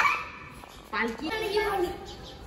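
Children's voices: the end of a call right at the start, then a short high-pitched spoken phrase about a second in.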